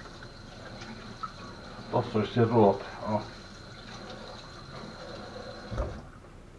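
Kitchen tap running water into the sink as a steady wash, with a brief low thump near the end.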